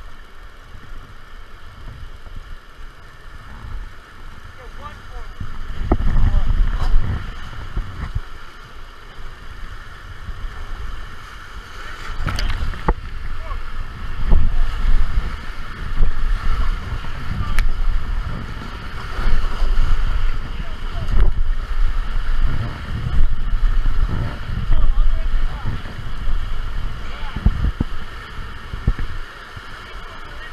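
Whitewater rapids rushing past an inflatable raft, with wind and splashing buffeting the microphone. The rushing grows heavy about six seconds in, then comes in repeated surges through the rest as the raft runs the waves.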